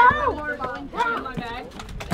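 Children's voices making short wordless calls, rising and falling in pitch, in two bursts about a second apart.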